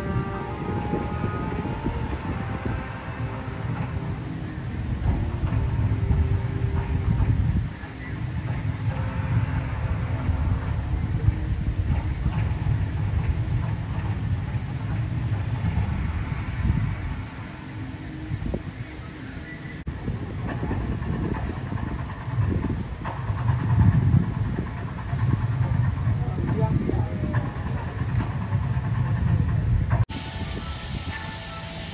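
Amusement-park rides running: a low mechanical rumble that swells louder twice, with people's voices in the background.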